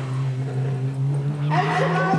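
Electronic sound effect of a home-made time machine powering up: a low hum rising steadily in pitch, joined about one and a half seconds in by a cluster of warbling, swooping tones.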